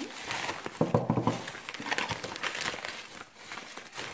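Crumpled paper wrapping crinkling and rustling as hands pull it apart to unwrap a small clay cup. The sound is busiest in the first couple of seconds and thins out toward the end.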